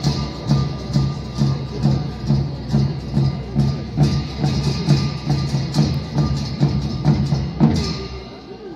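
Tibetan opera drum and cymbals playing a steady beat of about two strokes a second, the dance interlude between sung passages, stopping just before the end.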